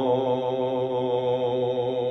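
A singer holding one long sung note with a slow vibrato.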